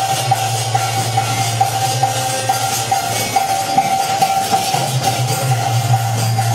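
Instrumental passage of a Hindi bhajan with no singing. A sustained low drone and a held mid-pitched tone sound under steady, evenly repeating percussion strokes.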